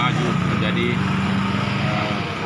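A man's voice holding one long, level hesitation sound between phrases of speech.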